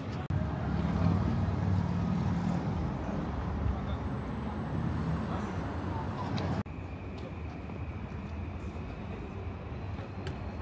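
City street ambience: a steady low traffic rumble with people talking nearby. It drops suddenly to a quieter street hum about two-thirds of the way through.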